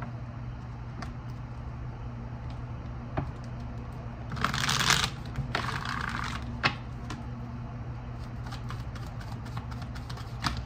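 A deck of tarot cards being shuffled by hand: soft card slides and light taps, with a louder rush of cards sliding against each other about halfway through.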